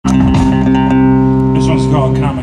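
Electric rock band, with guitars, bass and drums, holding a loud sustained chord with a few cymbal and drum strokes: the closing chord of a song. A man's voice calls out over it near the end.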